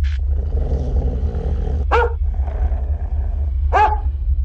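Horror-trailer sound design: a brief burst of static hiss, then a deep low rumble under a harsh, growl-like roar lasting about a second and a half. Two short, sharp cries follow, close to two seconds apart.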